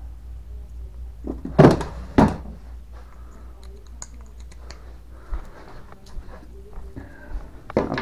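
Two loud thunks about half a second apart a couple of seconds in, followed by light clicks and handling noise of small plastic battery connectors being picked out of a wooden parts drawer.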